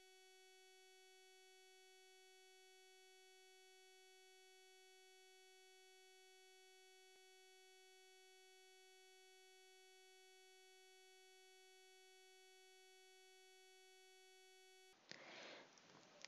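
Near silence, holding only a very faint, steady electronic tone with evenly spaced overtones. The tone cuts off suddenly about a second before the end.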